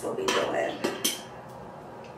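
Hand can opener clicking and scraping against a metal StarKist tuna can as it is fitted and worked: a few sharp metal clicks in the first second, then quiet.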